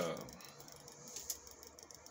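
A brief spoken 'uh' at the start, then quiet room tone with a few faint clicks.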